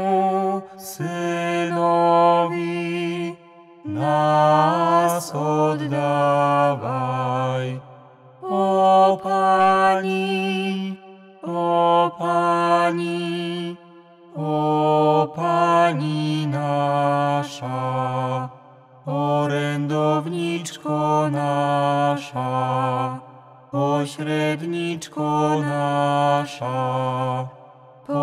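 Slow devotional chant sung in about seven short phrases on sustained notes, with brief pauses between them.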